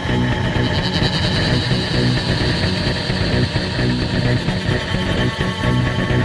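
Loud space-punk rock recording: a dense, sustained wall of sound over a repeating low-end pulse, with a high sustained tone coming in about half a second in.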